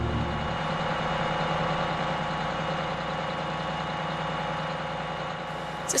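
A coach bus engine idling with a steady low rumble.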